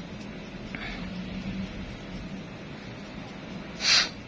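Faint scraping of a small metal nail tool against the edge of a big toenail as debris is cleared from an ingrown nail, with a short, louder hiss just before the end.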